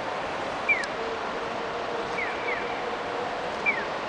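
Electronic chirping of a Japanese pedestrian crossing signal: a single falling 'piyo' alternating with a 'piyo-piyo' pair, repeating about every second and a half, the single chirps the loudest. Steady city traffic noise lies underneath.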